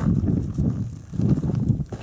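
Hand pick digging and scraping into gravelly ground: two runs of dull, low knocks of about a second each.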